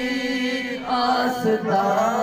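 A man singing a Sufi devotional zikr chant into a microphone, holding long notes that bend in pitch, over a steady low held tone.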